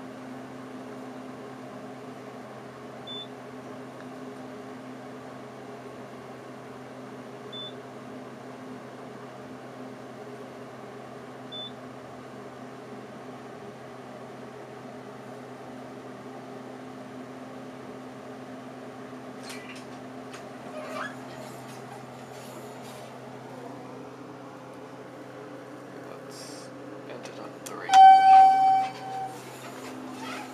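Traction elevator car travelling down, with a steady low hum throughout and faint short beeps about every four seconds early on. Some clicks come later, and near the end a loud electronic chime sounds twice over about a second.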